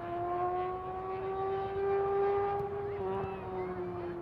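A steady motor drone whose pitch rises slowly and then eases down again after about three seconds.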